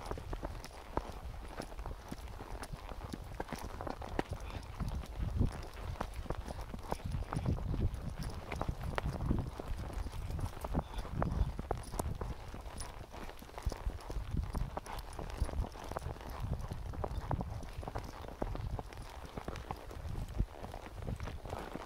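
A horse's hooves clip-clopping along a dirt trail in an uneven run of steps, over a low rumble of wind on the microphone.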